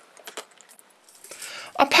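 Faint, scattered rattling and clicking of horse feed pellets in a plastic tub.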